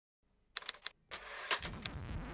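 A moment of dead silence, then the opening of a TV show's title sting: a quick run of sharp clicks about half a second in, then a swell of noise with two more clicks, leading into the theme music.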